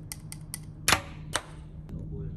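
A few sharp clicks and taps, the loudest about a second in, over a low steady hum.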